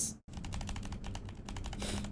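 Computer keyboard typing: a quick, close-set run of key clicks over a faint steady hum.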